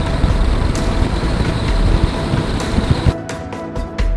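A car driving along a paved road, heard close to the front wheel: steady road and tyre noise with a heavy low rumble, over background music. The road noise cuts off suddenly about three seconds in, leaving the music.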